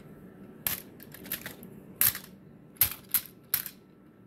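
Plastic action-figure parts clicking and clacking as the toys are handled: five sharp clicks at uneven spacing.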